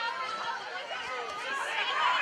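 Spectators' voices shouting and calling out over one another during live play, growing louder near the end.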